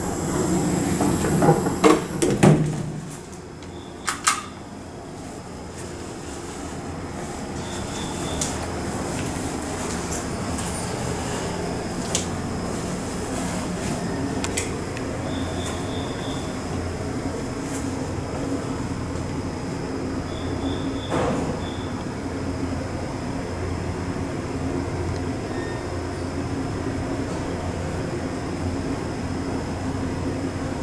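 Doors of a 1972 Otis traction elevator closing with a few knocks and clatter, then the car running away in the hoistway: a steady drone through the closed hall doors that builds over a few seconds and holds.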